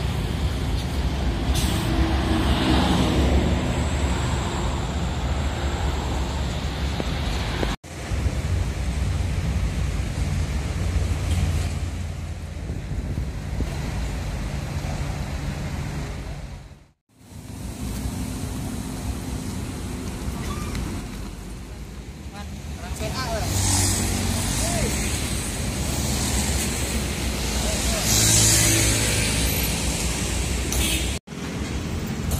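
Street traffic at a roadside bus stop: diesel bus engines running with a steady low rumble, motorbikes passing and background voices, with a couple of loud hisses near the end. The sound drops out briefly twice.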